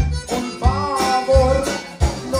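Live conjunto band playing: a button accordion carries the melody over bass guitar and guitar.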